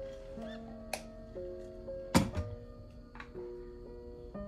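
Gentle plucked background music with notes changing every half second or so. About two seconds in comes a sharp knock, the loudest sound, as a stainless-steel vacuum jug is handled and set down on the table, with a couple of smaller clicks around it.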